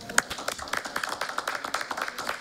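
A small group clapping: many uneven hand claps overlapping.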